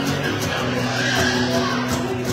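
Acoustic guitar strummed in a steady, even rhythm, with chords ringing between the strokes.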